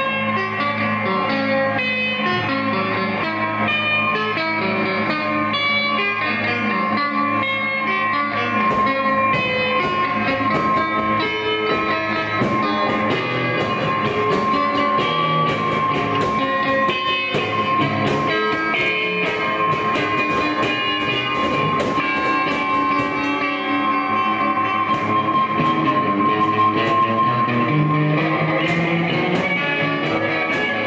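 Live noise-jazz played on electric guitars through effects pedals: dense, layered guitar sound at a steady loud level. From about a third of the way in, a steady high tone is held until near the end, with sharp clicks and crackles scattered over it.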